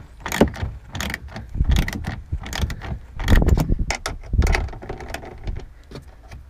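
A hand ratchet clicking in irregular runs, with knocks and handling noise, as the nuts holding a taillight housing are run onto the housing's studs.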